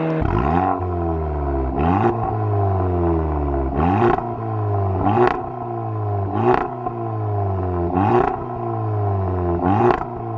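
Audi S1's 2.0 TFSI turbocharged four-cylinder through a Remus non-resonated cat-back exhaust, revved in about seven short, sharp blips. The revs climb quickly and fall away slowly each time, with a crack from the exhaust at each peak.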